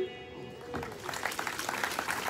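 A live band's last chord ringing out and fading, then an audience beginning to clap: scattered claps from about half a second in, growing denser towards the end.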